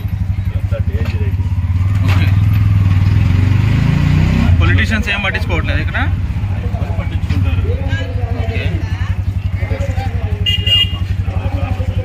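Auto-rickshaw engine running under way with a rapid low putter, its pitch rising about three to four seconds in as it speeds up.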